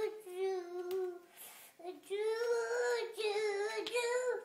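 A toddler singing a wordless tune in long held notes: one note in the first second, a short break, then a longer sung phrase. There is a faint knock about a second in.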